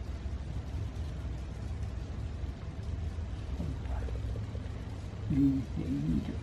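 A steady low hum, with a brief murmured voice near the end.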